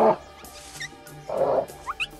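A man's loud, rough imitation of an animal call through cupped hands, cutting off just after the start, with soft film music underneath. A second, shorter burst of the call comes about a second and a half in, followed near the end by a few quick, high, rising chirps.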